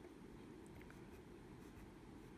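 Faint scratching of a pencil drawing short strokes on paper.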